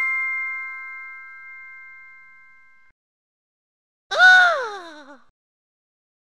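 A bell's ding rings out and fades away over about three seconds. About four seconds in comes a short, louder pitched sound that slides down in pitch and wavers as it ends.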